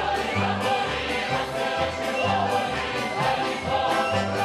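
Folk choir singing a Ukrainian folk song in chorus, over an accompanying band with accordions and a steady, pulsing bass beat.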